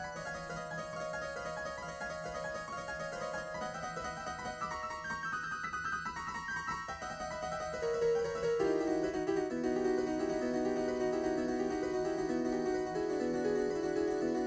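Stage keyboard playing a solo intro of quick, stepping notes in a piano-like tone. Lower notes join and the music grows louder about eight seconds in.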